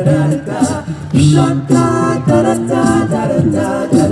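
Male a cappella group of five voices singing in close harmony into microphones, wordless 'do do' syllables in several parts with no instruments.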